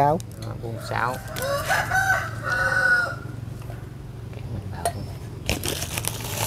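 A rooster crowing once: a single call of about two seconds that starts about a second in, rising at first and then held.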